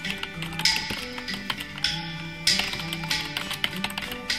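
Quiet background music with plucked guitar notes, under a run of quick typewriter key clicks as text is typed out.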